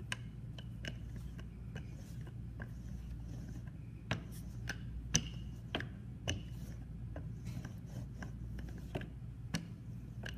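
Wooden rolling pin rolled back and forth over a clay slab, riding on wooden guide strips: a run of light clicks and knocks, with a few louder knocks around the middle. A steady low hum lies underneath.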